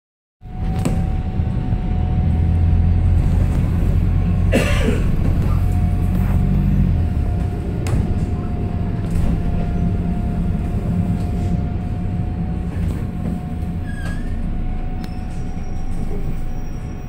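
Single-deck bus engine and drivetrain heard from inside the passenger saloon as the bus pulls away and drives on: a low rumble, heaviest for the first several seconds, with a steady high whine throughout and occasional short rattles and squeaks from the body.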